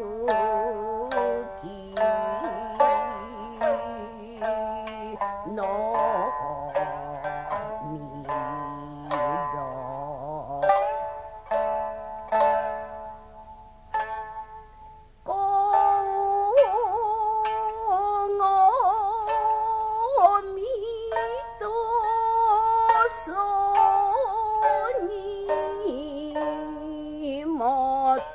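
Jiuta shamisen played alone in a passage of plucked notes, each struck and dying away. About halfway in, a woman's voice enters, singing long, wavering held notes in jiuta style over the shamisen.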